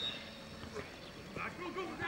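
Faint, scattered shouts of players across a Gaelic football pitch, just after a referee's whistle blast that cuts off right at the start.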